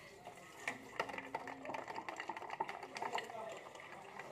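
Metal spoon stirring a cold drink in a tall glass, making light, irregular clinks and taps against the glass a few times a second.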